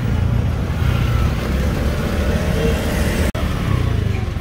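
A small motorcycle engine running steadily while riding in traffic, heard with road and wind noise. The sound breaks off sharply about three seconds in, then the low rumble carries on.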